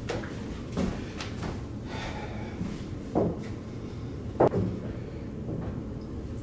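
Footsteps on a hardwood floor and a few light knocks and thuds, about five in all and the sharpest about four and a half seconds in, as pool balls are handled and set on the table.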